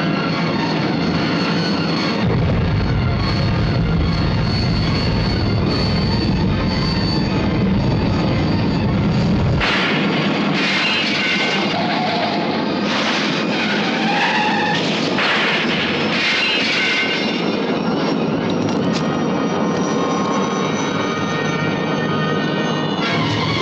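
Action-film soundtrack: background music mixed with helicopter and car-engine sound effects. A heavy, deep rumble runs from about two to ten seconds in, then several noisy surges follow.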